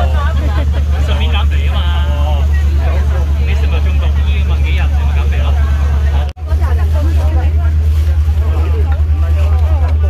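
Boat engine running with a steady low drone, with people talking over it. The sound drops out briefly about six seconds in.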